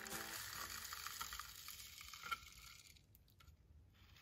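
Faint rustle of small foam beads pouring from a plastic bowl into a cut plastic-bottle funnel. It dies away about two and a half seconds in, and near silence follows.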